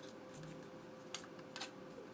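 Faint plastic handling sounds from a Logitech M215 wireless mouse turned over in the hands while its tiny USB receiver is slotted into the storage space inside, with two small clicks about a second and a second and a half in.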